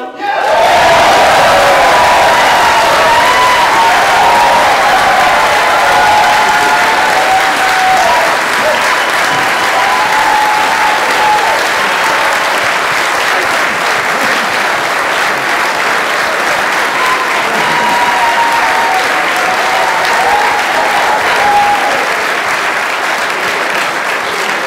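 Loud audience applause breaking out at once as the barbershop quartet's final sung chord cuts off, the clapping dense and steady, with voices cheering and whooping above it.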